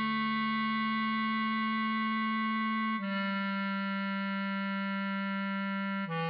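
Bass clarinet melody at a slow, half-speed tempo: one long held note, then a lower note held from about three seconds in, each tone perfectly steady.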